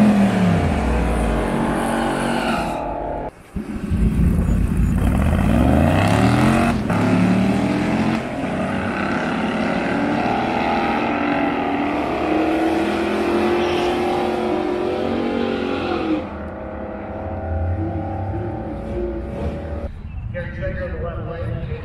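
Drag racing cars, among them a Mazda RX2 drag car, revving at the starting line, then launching and accelerating hard down the strip, with engine pitch climbing and dropping through several gear changes before fading out about 16 seconds in.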